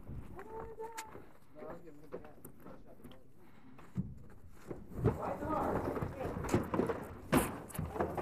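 Muffled voices, then knocks and scrapes as bobsleds are pulled and handled on the icy start ramp, growing busier in the second half with a sharp knock near the end.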